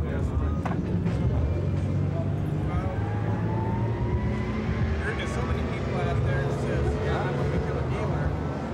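Outdoor traffic ambience: a steady low rumble of vehicle engines, with one engine rising in pitch around the middle, under indistinct voices.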